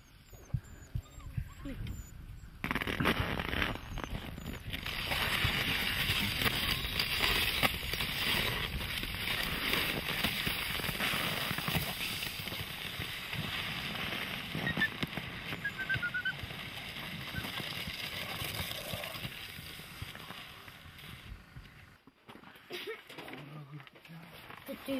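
Wooden reindeer sled pushed over snow: the runners hiss and scrape along the crust while footsteps crunch. The sound starts suddenly about three seconds in and dies away shortly before the end.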